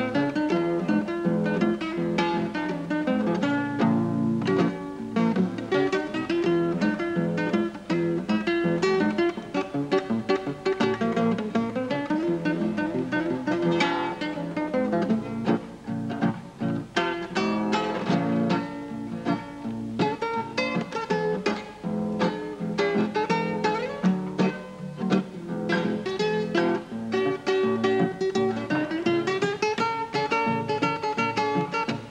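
Solo nylon-string classical guitar played fingerstyle: a continuous stream of plucked notes, melody over bass, in the player's own non-standard tuning.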